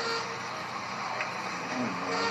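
Steady hiss and room noise of a low-quality room recording, with faint indistinct low sounds and a small click about a second in.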